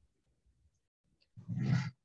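A person's short, breathy voiced sound close to the microphone, like a sigh or grunt, lasting about half a second and starting about one and a half seconds in.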